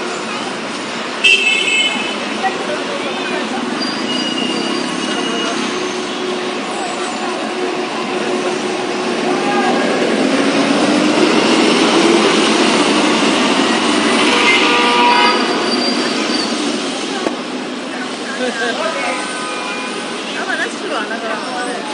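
Busy street traffic noise with vehicles idling and moving. A brief car horn toot sounds about a second in, and the noise swells from about halfway as a city bus passes close by.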